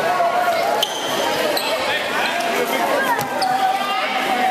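Voices and chatter echoing around a school gymnasium, with a few thuds of a basketball bouncing on the hardwood court.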